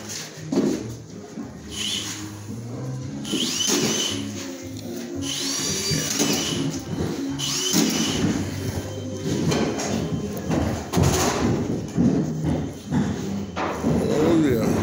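Drywall screw gun whining in short bursts that spin up and settle, four times in the first half, with music playing underneath.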